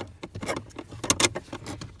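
Small clicks and scrapes of a screwdriver prying a plastic relay bracket loose under a truck's dashboard, with a cluster of sharper clicks a little past one second in.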